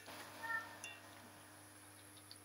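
A brief, faint, high-pitched call about half a second in, with a shorter one just after, then near silence with a faint steady low hum.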